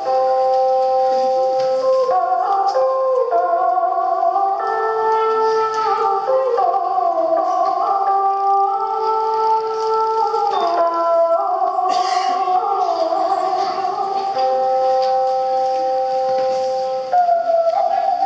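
Vietnamese traditional instrumental music: a đàn bầu monochord plays a slow melody of held notes that slide from pitch to pitch, over a plucked đàn tranh zither.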